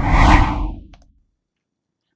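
A whoosh transition sound effect, swelling with a deep rumble and swirling sweeps, then fading out about a second in.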